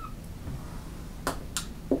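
Dry-erase marker drawing on a whiteboard over a steady low room hum, with two short scratchy marker strokes about a second and a half in.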